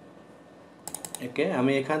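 A quick cluster of four or five sharp computer clicks about a second in, then a man starts speaking.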